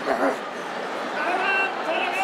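Sumo referee (gyōji) giving his high, drawn-out, wavering calls to the grappling wrestlers during the bout. The calls pause briefly and resume about a second in, over the arena crowd.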